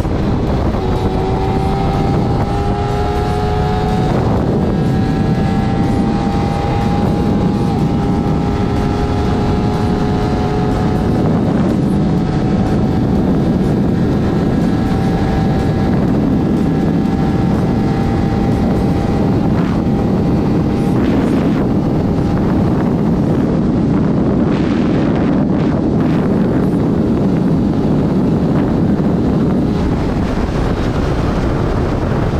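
Onboard riding sound of a Honda CBR250RR's parallel-twin engine on its stock exhaust, cruising at highway speed under heavy wind rush on the microphone. The engine note climbs gradually over the first several seconds as the bike gathers speed, then holds steady.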